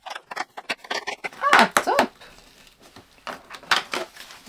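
Cardboard compartment door of an advent calendar being pried and torn open: a quick run of sharp paper-and-card clicks and crackles, with more near the end. A brief sound from a voice comes about a second and a half in.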